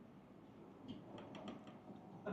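A few faint, light clicks of chopsticks and tableware, bunched together a little after a second in, over quiet room tone.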